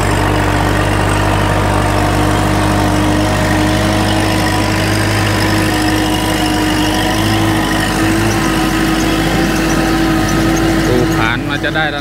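Kubota L5018 SP tractor's diesel engine running steadily under load as it pulls a disc plough through the soil.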